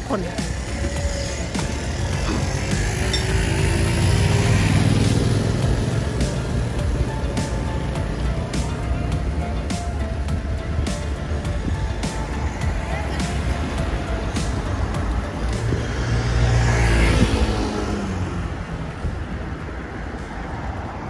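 City street traffic heard from a moving bicycle: a steady low rumble, with vehicles passing close by and swelling loudest about four seconds in and again near the end.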